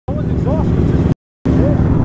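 Kawasaki sportbike engines running steadily at low revs, with a few short vocal sounds over them. The sound cuts out completely for a moment a little past one second, then the engines carry on.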